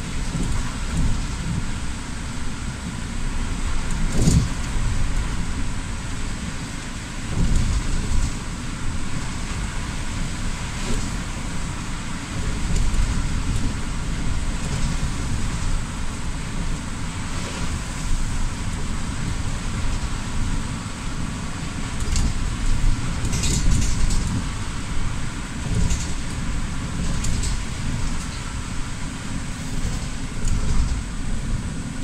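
City bus driving on a wet road, heard from inside: a steady low rumble of engine and tyres under the hiss of rain and road spray. A few brief knocks or clicks stand out, one about four seconds in and a cluster after twenty seconds.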